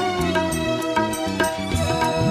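Instrumental passage of a Malayalam devotional song, with no vocal: sustained melody notes over light, regular percussion.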